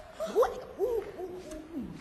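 A high-pitched voice speaking a line in a drawn-out, sing-song way, its pitch sliding up and down in long swoops.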